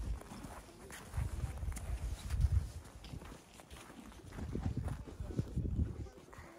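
Footsteps crunching on snow as someone walks, with wind rumbling on the phone's microphone.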